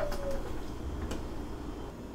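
A soft cooing tone that rises slightly and then falls in pitch over the first half second, followed by a few light clicks as a kitchen cupboard is opened and a ceramic mug is taken from the shelf.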